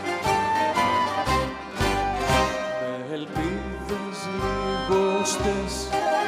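Band playing a Greek laïko song, a violin carrying the melody over a rhythmic bass line.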